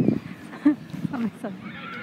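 Players' voices shouting and calling out on the pitch in short rising and falling calls, with a higher-pitched voice near the end.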